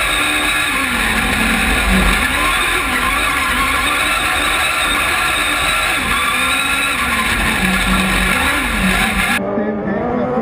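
Buggy1600 autocross buggy's engine under hard acceleration from the onboard camera, revs rising and falling several times through gear changes. Near the end the sound cuts to a duller trackside recording of the buggies racing past.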